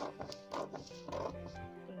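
Background music with steady held notes, broken by a few short crackling bursts in the first second and a half, typical of paper pattern pieces being handled on a table.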